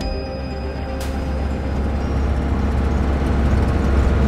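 Background music fading out over the first second or two as the steady low drone of a 1995 Fiat Ducato 2.5 TDI motorhome's cab takes over: engine and road noise while driving, slowly growing louder.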